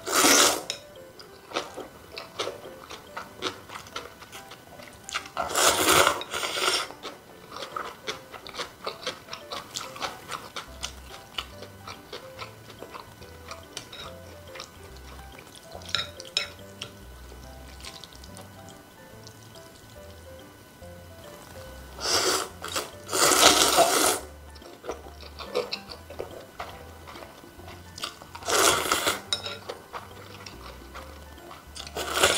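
Close-miked slurping of cold noodles in broth, with soft wet chewing between. There are loud slurps at the start, about six seconds in, twice close together around two-thirds through, and once near the end.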